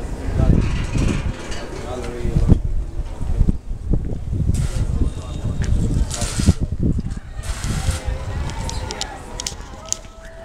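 Indistinct voices of people talking in the background, over low rumble from wind and handling on a handheld camera's microphone.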